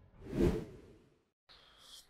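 A single whoosh transition sound effect, swelling and dying away within about half a second shortly after the start.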